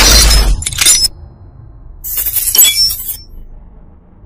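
Glass shattering twice: a loud crash that cuts off about a second in, then a shorter shatter about two seconds in that dies away.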